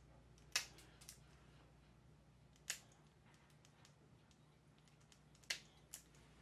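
Small pet nail clippers cutting a dog's toenails: a few sharp, separate snips, the clearest about half a second in, near three seconds, and twice near the end.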